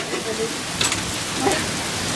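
Heavy rain falling steadily, a dense, even hiss of a downpour on pavement and cars.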